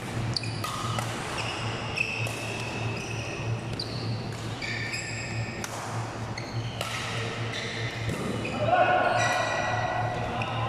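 Badminton rally in a large hall: sharp clicks of rackets striking the shuttlecock and short high squeaks of court shoes on the floor, with voices and a steady low hum underneath. Louder squeaks or a call come near the end.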